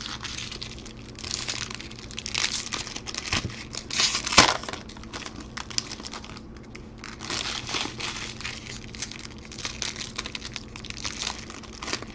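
Foil trading-card pack wrappers crinkling and tearing in the hands as Topps Chrome packs are opened, in irregular rustles, with one sharp snap about four seconds in.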